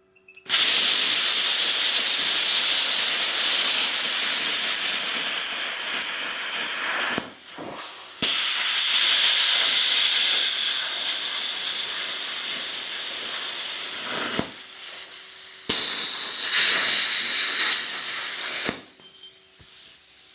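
ArcCaptain Cut 55 ProLux plasma cutter at 45 amps cutting rust-scaled quarter-inch steel plate: a loud, steady hiss of the arc and compressed-air jet in three long stretches, broken twice by short pauses and stopping near the end. The machine cuts through with no trouble at this setting.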